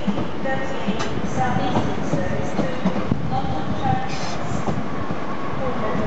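Southeastern electric multiple-unit train running along the platform: steady rolling noise with rapid clicks of the wheels over rail joints and short squeals now and then.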